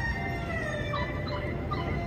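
A few short bird chirps, about a second in and again near the end, over a steady low rumble and long, slowly gliding held tones.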